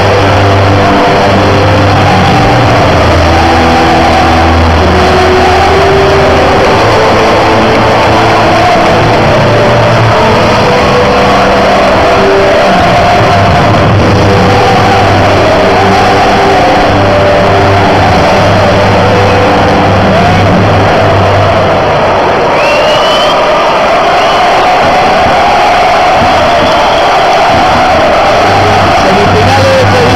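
A large football stadium crowd singing and cheering over music from the stadium loudspeakers, very loud and unbroken throughout.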